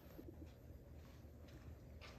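Near silence: quiet room tone with a faint low hum.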